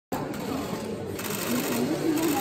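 Electronic voting machine's ballot printer running with a rapid mechanical buzz as it prints a paper ballot, the buzz strongest in the first second.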